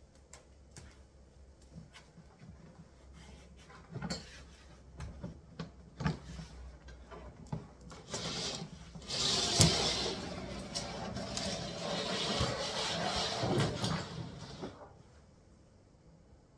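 Knocks and bumps as shoe cabinets are handled, then about six seconds of loud scraping as a cabinet stack is pushed across a tiled floor. The scraping stops shortly before the end.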